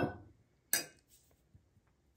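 Metal tumblers being handled and set down: a sharp knock about three-quarters of a second in, then a faint tick.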